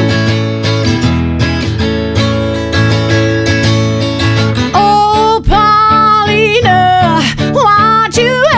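Hollow-body Taylor electric guitar strummed through a Vox AC15 tube amp, the chords ringing. About five seconds in, a woman's voice comes in over it, singing strong held notes.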